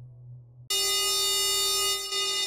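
Spire software synthesizer playing AI-generated FX presets. The fading tail of a low held tone gives way, about two-thirds of a second in, to a new bright held tone thick with overtones that holds steady.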